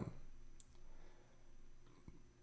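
Quiet room tone with a couple of faint clicks from working a computer, one about half a second in and one near the end.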